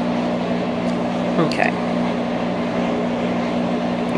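A steady low machine hum with two constant low tones and a soft hiss over it, unchanging throughout.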